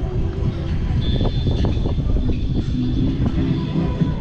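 Wind rushing over a camera microphone as a giant swing sweeps through the air, a dense rumble throughout, with a thin high whine coming in about a second in.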